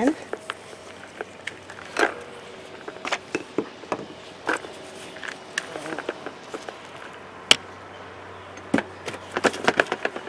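Soft rustles and scattered clicks of potting soil, roots and a plastic pot being handled as gloved hands lift turnip seedlings out to separate them, with a small cluster of sharper clicks near the end.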